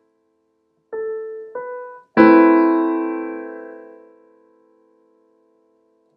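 Piano: two single notes picked out about a second in, then an A minor add9 chord struck and left to ring, fading away over a couple of seconds.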